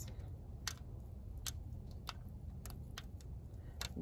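A few soft, scattered clicks and crackles of moist potting soil as a clump of tomato seedlings' roots is pulled apart by hand, crumbs dropping onto an aluminium foil pan, over a low steady rumble.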